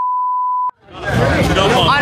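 TV colour-bars test tone: one steady, pure beep that cuts off suddenly with a click less than a second in. After a moment of silence, people talking and music fade back in.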